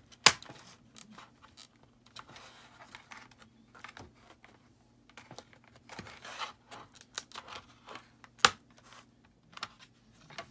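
Plastic bottom access cover of a Dell Latitude 3440 laptop being pried off by hand: sharp snaps as its retaining clips let go, the loudest just after the start and another near the end, with lighter clicks and plastic scraping in between.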